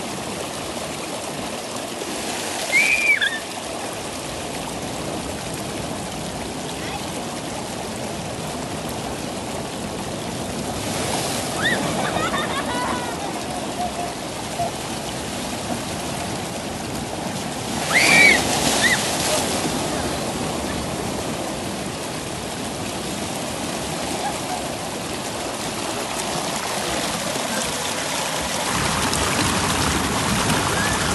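Ocean surf breaking on rocks and seawater rushing and washing through a rocky tide pool, a steady noise throughout. Near the end the water grows louder as it pours close by between the rocks. Two short high cries rise above it, about 3 seconds and 18 seconds in.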